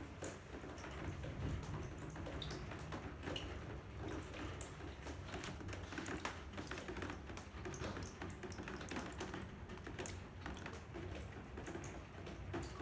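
Rainwater leaking through an old roof skylight, dripping and splashing irregularly into plastic basins below: many quick, uneven drops.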